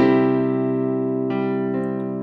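Digital keyboard in a piano voice: a C major chord, C and G in the left hand and C–E–G in the right, is struck at the start and held. A few more notes come in about a second and a half in.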